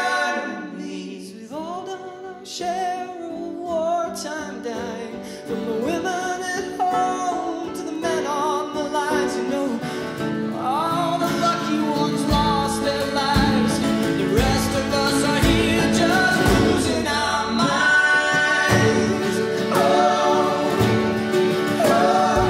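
Several male voices singing in harmony over acoustic string instruments, in a live band performance. About twelve seconds in, a low beat enters at roughly one stroke a second, drops out briefly, and comes back near the end.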